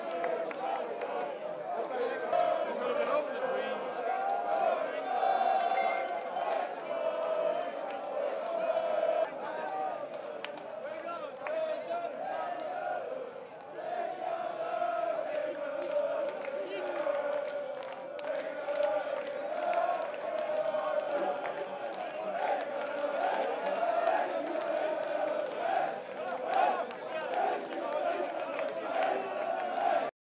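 A street crowd of football supporters chanting and shouting, many voices together, the chant dipping briefly about halfway through.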